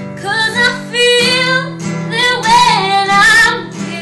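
A woman singing solo, accompanying herself on a nylon-string classical guitar. Sung phrases bend and hold over steady guitar chords.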